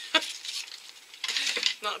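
Small hard plastic toy figures clicking against the tabletop and each other as they are handled and set down: one sharp click near the start, then a few lighter taps.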